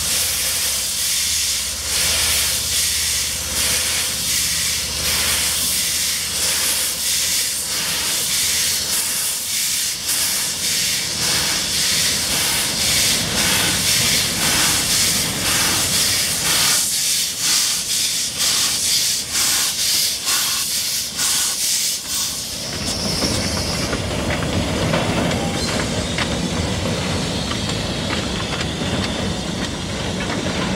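Narrow-gauge steam locomotive shunting wagons: a loud steam hiss with rhythmic exhaust chuffs as it works. About three quarters of the way in the hiss stops suddenly, leaving the rumble of the engine and wagons rolling on the rails.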